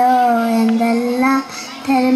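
A young girl singing solo into a microphone, holding one long, slightly wavering note, then a short break and a new note starting near the end.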